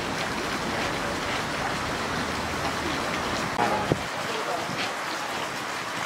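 Steady hissing outdoor background noise, like rushing water or wind, with faint voices; the low rumble under it drops away about four seconds in.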